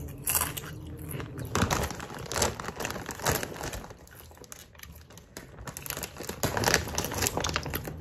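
Crunching and chewing of a Hot Mustard Doritos tortilla chip, with crinkling of the plastic chip bag, in irregular crisp crackles.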